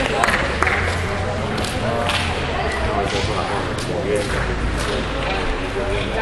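Indistinct background voices echoing in a large sports hall, with several scattered sharp clicks and taps.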